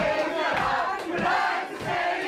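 A crowd of many voices singing and shouting along together, with a low beat about twice a second underneath.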